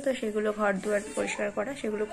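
Only speech: a woman talking in Bengali.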